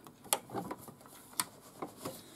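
Several sharp clicks and light knocks as an embroidery hoop is released and slid off a Singer Futura embroidery machine's arm.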